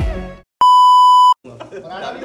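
A single loud, steady edited-in beep of about three-quarters of a second, the standard censor bleep tone, cutting in after background music fades out. A man's voice and laughter follow.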